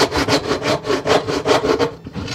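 Wooden-framed hand saw cutting down through a round block of wood in quick, even strokes.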